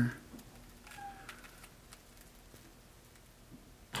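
Quiet room with a faint steady hum and a few faint clicks, then an electric church organ sounds loudly right at the end, the first notes played on it.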